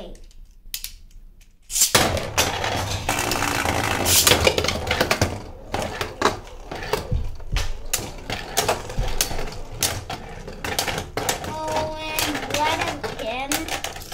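Two Beyblade spinning tops launched into a plastic Beyblade Burst stadium about two seconds in, then spinning and clashing, with a dense rattle of clicks and knocks as they strike each other and the stadium walls.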